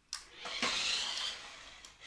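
Toy remote-control car's small electric motor whirring as it drives across the floor, starting just after a short click, swelling and then fading away over about a second and a half.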